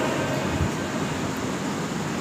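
Steady, even hiss of background noise with no distinct event in it.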